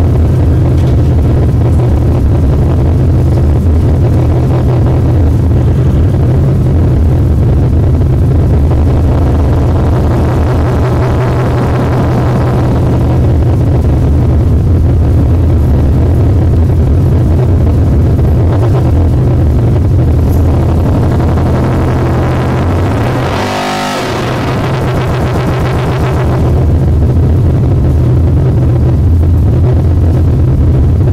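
Harsh noise played live on a table of chained effects pedals and electronics: a loud, dense wall of distorted static over a heavy low rumble. About two-thirds through it briefly thins and drops in level with a sweeping change in pitch, then swells back to the full wall.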